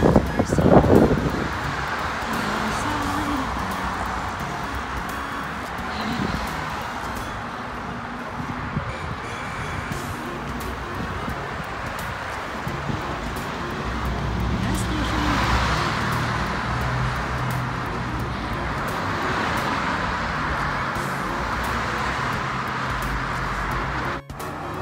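Street traffic noise, cars running past on the road, with a louder vehicle swelling past about fifteen seconds in and again near twenty seconds.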